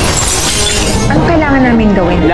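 A glass shattering: a sudden crash of breaking glass lasting about a second, followed by a voice sliding down in pitch.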